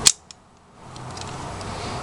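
A single sharp click at the very start, then a faint tick, followed by low steady background hiss.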